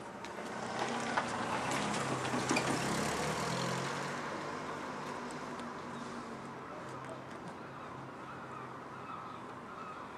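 A car's engine running as it drives past, growing louder over the first couple of seconds and then slowly fading away.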